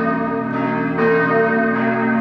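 Church bells ringing in the tower: several overlapping pitches hum on, with a fresh strike about a second in.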